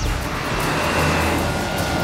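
Trailer sound design: a dense, steady rushing noise over a deep rumble, laid over the score.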